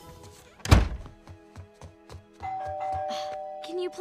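A heavy thump about three quarters of a second in. Then, about two and a half seconds in, a two-tone ding-dong doorbell chime: a higher note followed by a lower one, both left ringing. Soft music plays underneath.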